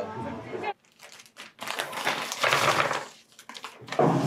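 A short bit of speech, then plastic snack wrappers crinkling as they are handled for about a second and a half.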